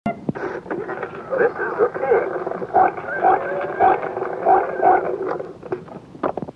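A muffled voice with its lows and highs cut off, as if played from a radio or an old tape, with no clear words. It fades out near the end, just before the music starts.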